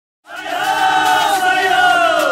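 A group of voices shouting together in one long held cry, starting suddenly about a quarter second in. Several pitches sound at once and sag slightly downward toward the end.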